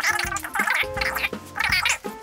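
Background music: a tune of short notes stepping between pitches, with a busier, higher part over it.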